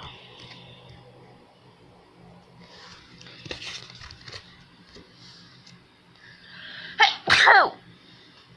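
A woman sneezes once, loudly, near the end: a quick rush of breath, then a sharp voiced burst that falls in pitch.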